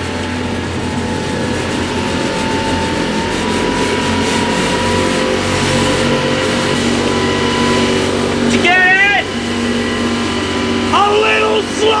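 Twin diesel engines of a Coast Guard 44-foot motor lifeboat running steadily under way, with water rushing and spray along the hull. A brief shout about three-quarters of the way through and shouting near the end.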